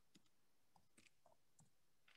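Near silence: room tone with a few very faint, scattered clicks.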